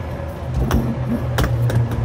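A few sharp clicks and knocks from a pontoon lounge's flip-over seat backrest as it is moved by hand and set in place, over a steady low hum.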